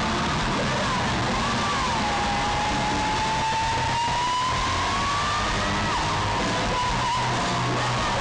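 Live rock band recorded from the audience on a phone: an electric lead guitar wavers through a few bends, then holds one long note that slowly slides upward in pitch before breaking off about six seconds in, over bass and drums.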